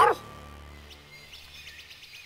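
The cartoon's theme jingle ends on a final note right at the start, its low tones fading away over the next two seconds. A few faint bird-like chirps of the new scene's outdoor background sound from about a second in.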